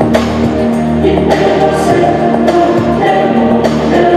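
Music with singing over a steady beat, with a stroke about every second and a quarter.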